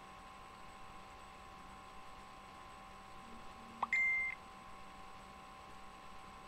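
A short electronic beep about four seconds in: a quick upward chirp, then a steady high tone lasting about a third of a second. A faint steady electrical whine runs underneath.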